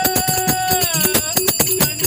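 Devotional bhajan singing: a man's voice holds one long note that falls away about a second in, over a steady beat of about four strokes a second from a dholak-style hand drum and ringing small hand cymbals.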